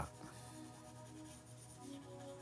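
Apple Pencil stroking and rubbing across an iPad Pro's glass screen, faint, over soft background music.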